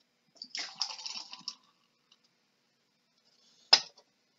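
Carbonated cider poured from a can into a glass for about a second, then a single sharp knock near the end.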